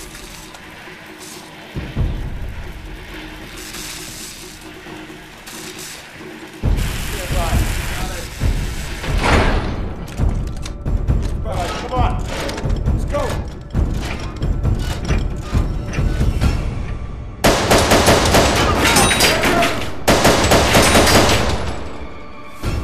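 Bursts of automatic rifle fire from a film-style firefight over dramatic music. The shooting starts about a third of the way in and runs loud and continuous through the last few seconds.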